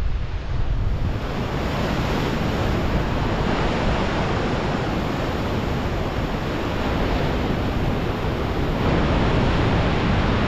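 Ocean surf breaking and washing over flat rock ledges, a steady rush of water, with wind buffeting the microphone as a low rumble.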